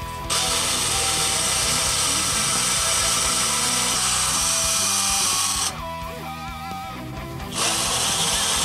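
Power drill running as a small bit drills into a wooden guitar body: one run of about five seconds, a pause of about two seconds, then the drill starts again near the end.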